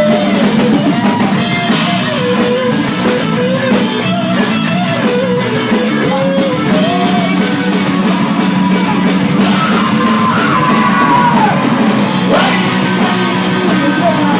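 A rock band playing live: electric guitar, bass guitar and drum kit, with a man singing into a microphone. The sung line climbs higher about ten seconds in.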